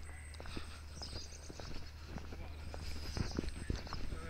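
Footsteps on brick and cobble paving, an irregular series of sharp steps at walking pace, with a few bird calls in the background.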